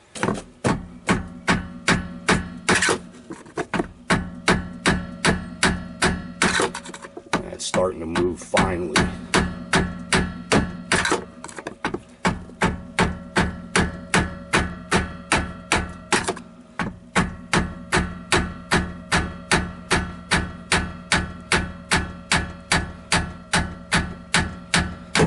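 Repeated hammer blows, about two to three a second, driving a screwdriver through the steel can of a stuck spin-on oil filter, each blow ringing metallically.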